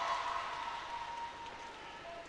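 Spectators in an indoor arena cheering and clapping for a made free throw, the noise fading away over the two seconds, with a few voices holding a note in it.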